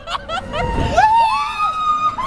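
Child squealing with delight on a spinning teacups ride: short high squeals at the start, then one long high squeal that rises and falls about a second in.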